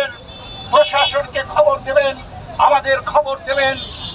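A man speaking loudly into a handheld megaphone in short phrases, after a brief pause near the start, with steady street noise beneath.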